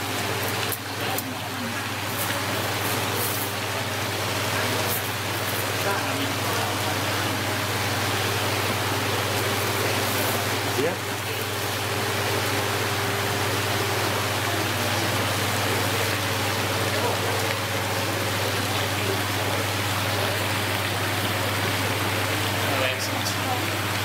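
Steady rush of water churning into a large aquarium holding tank, with a low steady hum from the tank's pumps underneath.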